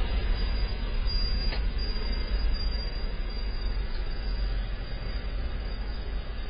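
Steady low rumbling background noise, with a faint click about a second and a half in and another at about four seconds.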